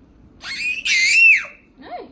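A baby's loud, very high-pitched squealing shriek, about a second long in two parts, its pitch rising, dipping and rising again before it falls away.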